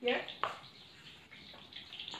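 Mackerel deep-frying in a wok of oil over a gas burner, a steady sizzle, with a sharp click about half a second in.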